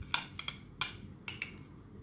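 Steel knife and fork clicking and scraping against a ceramic plate while cutting a fried noodle omelette, about six short clicks in the first second and a half.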